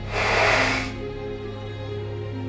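A hissing whoosh sound effect lasting about a second, then background music with held notes.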